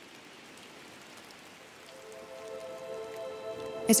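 Steady rain hiss that slowly grows louder, with soft sustained music chords fading in about halfway through.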